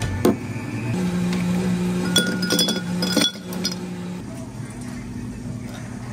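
A tall glass set down on a steel counter with a knock, then a quick run of ringing clinks as ice cubes drop into the glass, over a steady low hum.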